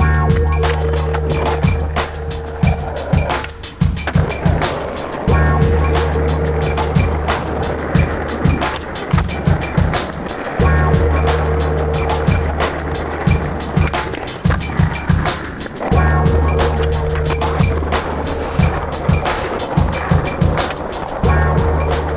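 Skateboard wheels rolling over stone paving, with sharp clacks of the board hitting the ground, over a hip-hop beat. The beat's deep bass phrase repeats about every five seconds.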